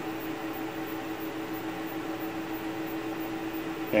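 Plasma tube and its square-wave frequency generator buzzing steadily: one unchanging mid-pitched tone over a hiss.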